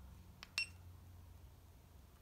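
A small click and then one short, high electronic beep from a GoPro Hero Session camera, about half a second in, over faint steady room hum.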